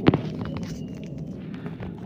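Footsteps on a leaf-littered forest path, brushing through undergrowth, with one sharp click just at the start that is the loudest sound.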